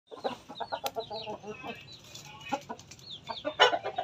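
Rooster clucking in a quick run of short calls, with high, falling chirps over it and one louder call near the end.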